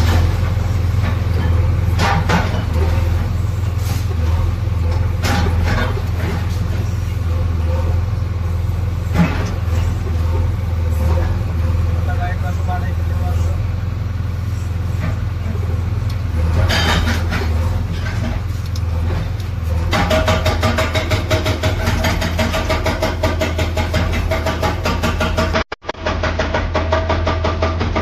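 JCB 3DX backhoe loader's diesel engine running steadily under load while its hydraulic rock breaker works a reinforced-concrete building, with scattered sharp cracks of breaking concrete and falling debris. About two-thirds of the way through, the breaker hammers in a fast, even rhythm.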